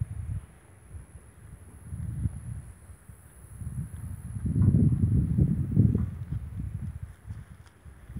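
Wind buffeting a phone's microphone outdoors: an irregular low rumble that swells and fades in gusts, strongest about halfway through.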